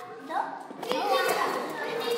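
Young children's voices calling out and chattering over one another in a classroom, with a single sharp knock about a second in.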